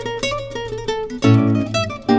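Two classical guitars playing a fast Bulgarian daychovo horo dance tune in its lopsided 9/8 rhythm: a quick run of plucked melody notes over accented bass notes.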